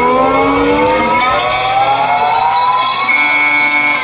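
Live blues band on stage holding a long note that slides slowly upward in pitch over about three seconds, then settles on a steady high tone near the end.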